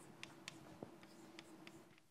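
Chalk writing on a blackboard: a faint run of short ticks and taps as lines and a label are drawn.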